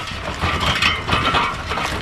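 Wooden spoked bullock-cart wheel and timber cart frame rattling and creaking as the cart rolls close past: a busy run of small clicks and knocks.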